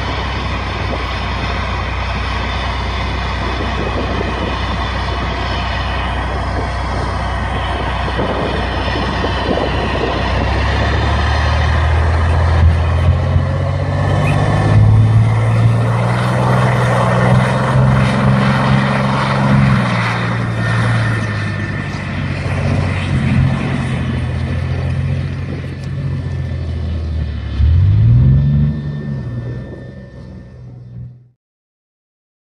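Merkava main battle tank's diesel engine running loud and low. Its pitch climbs a little after ten seconds in as the tank drives off, holds high for several seconds, then settles, and a short, sharp rev rises and falls near the end.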